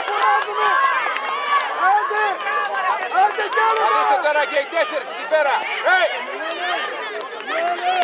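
Several high-pitched voices shouting and cheering over one another, excited and continuous, as a small group celebrates a goal.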